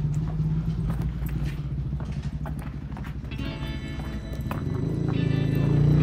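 A low, pulsing engine rumble that fades over the first few seconds, with scattered sharp clicks. Music fades in about three seconds in and grows louder.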